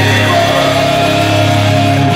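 Rock band playing live and loud: electric guitar, bass and drums, with notes held steadily through the moment.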